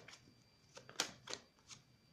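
A deck of tarot cards being shuffled in the hands: a few short, sharp card snaps, the loudest about halfway through.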